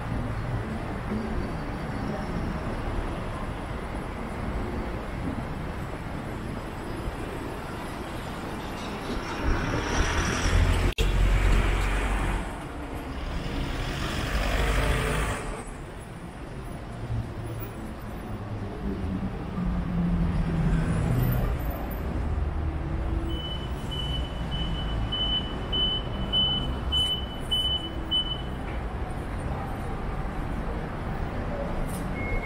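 City street traffic: cars and trucks running along the road close by, with two louder vehicles passing about ten to fifteen seconds in. A short high electronic beep repeats evenly for about five seconds near the end.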